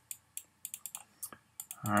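Stylus clicking and tapping on a pen tablet while handwriting, a string of short, irregular clicks. A man's voice starts speaking near the end.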